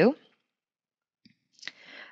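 A spoken word trails off into near silence. A faint single click comes a little over a second in, and a short intake of breath follows just before speech resumes.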